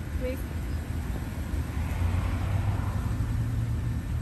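Parked police SUV's engine idling, a steady low hum.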